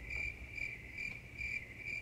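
Crickets chirping: a steady high trill pulsing about twice a second.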